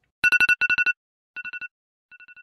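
Electronic alarm-clock beeping: rapid high beeps in three short bursts, the third quieter.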